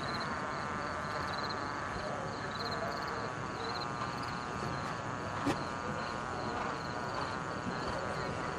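Outdoor ambience of a murmur of distant voices, with a faint high chirping repeated every half second or so and a single sharp click about five and a half seconds in.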